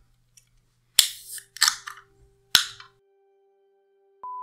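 Three sharp cracks like shots, each with a short hissing tail, about one, one and a half, and two and a half seconds in.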